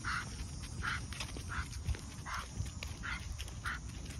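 Pit bull panting hard in short, even breaths, about two to three a second, while straining against its leash.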